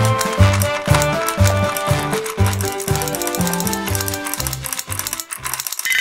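Upbeat background music with a bouncing bass line, about two notes a second, under a bright melody.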